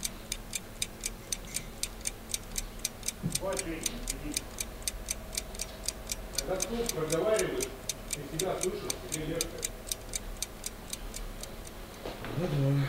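Fast, even ticking, about four light ticks a second, that stops near the end, with a man muttering quietly a few times over it.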